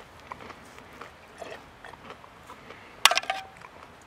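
Faint small sounds as a drink is sipped from a stainless-steel camp cup. About three seconds in comes a sharp metallic clink that rings briefly.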